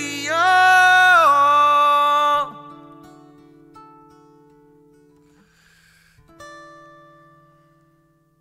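A man sings a long held, wordless note over an acoustic guitar for about two seconds, then the guitar rings on and fades. About six seconds in, a last quieter guitar chord is plucked and dies away as the song ends.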